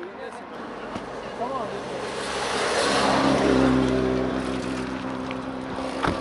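A car engine running close by, swelling from about two seconds in to its loudest around the middle, then holding a steady low hum.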